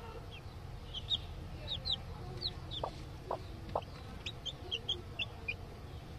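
Newly hatched chicks peeping: short high calls, each falling in pitch, about three a second. The brooding hen gives three short, soft, low clucks about halfway through.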